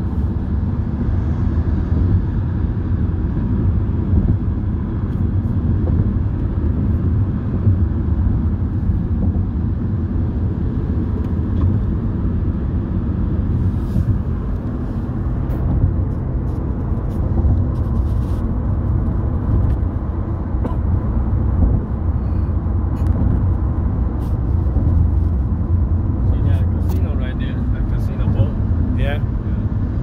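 Steady low road rumble inside a moving car's cabin: tyre and engine noise while driving across a highway bridge, with a few faint ticks in the second half.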